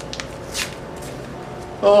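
Paper rustling as a mailed envelope is opened by hand, with a brief louder rustle about half a second in.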